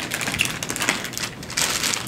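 Thin plastic bag crinkling and rustling as it is handled, in quick irregular crackles.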